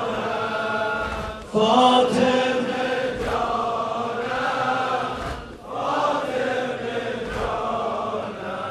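A large crowd of men chanting a mourning lament together, in long sung phrases that break briefly for breath about every four seconds.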